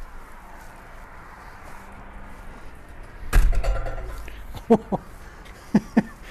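A glazed balcony door being pushed open, with one loud thud about halfway through, followed by a few short sharp steps.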